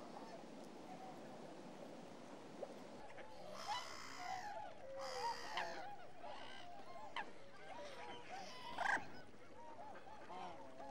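A soft, steady background hiss, then from about three seconds in a flock of geese honking, with many overlapping calls. The calls are loudest shortly before the end.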